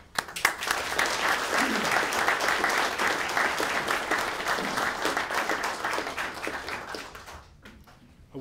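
Audience applauding: many hands clapping, starting just after the opening and dying away about seven and a half seconds in.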